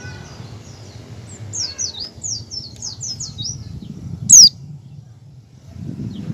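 White-eye (pleci) singing its ngecal song: a quick run of about eight falling chirps over two seconds, then one sharp, much louder call about four seconds in.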